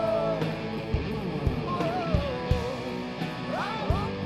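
Live rock band playing: a male lead singer over electric guitars and a drum kit, with drum beats recurring throughout.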